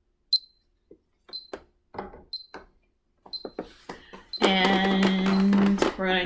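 Digital metronome set to 60 bpm, giving a short, high beep once a second. Near the end a woman's voice holds one steady note for about a second and a half over the beeps.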